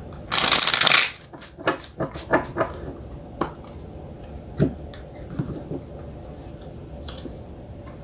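A deck of tarot cards being shuffled by hand: a loud, dense rush of cards lasting under a second near the start, then scattered light taps and flicks as the cards are handled.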